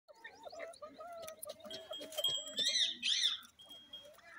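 Animal calls: a long wavering call for the first two seconds or so, then a few loud, sharp high calls that rise and fall, about two and a half seconds in.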